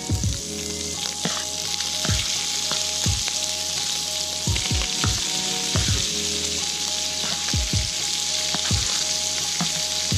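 Diced Spam and sliced mushrooms sizzling in butter in a stainless steel frying pan, a steady frying hiss as the mushrooms are added.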